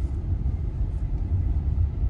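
Steady low road and engine rumble inside the cabin of a moving Hyundai Venue with the 1.0-litre turbo three-cylinder petrol engine.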